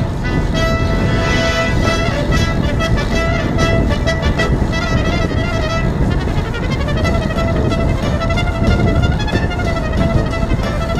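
Wind rushing over a bike-mounted GoPro's microphone while riding, with music of long held notes over it; the pitch slides up around the middle and then holds again.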